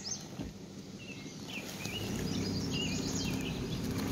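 A car's engine running low and steady as it rolls slowly, growing a little louder about halfway through, with birds chirping over it.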